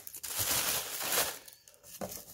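Packing wrap crinkling and rustling as it is handled, for about a second and a half before it dies down.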